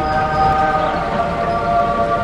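A loud held chord of several steady tones, shifting slightly in pitch about one and a half seconds in.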